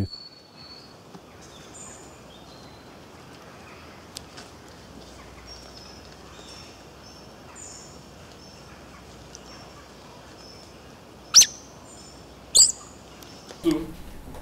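Birds chirping faintly over steady background hiss, with two loud, sharp chirps about a second apart near the end.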